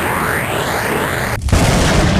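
Cartoon action sound effects: a rushing whoosh with sweeping pitch, then a sudden loud boom about one and a half seconds in.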